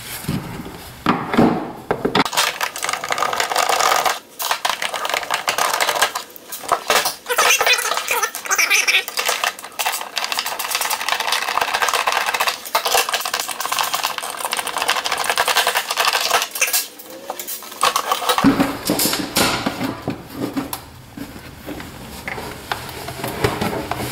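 Electric heater's plastic housing being taken apart by hand: a dense run of clicks, rattles and clatter as screws come out and the back cover is lifted off.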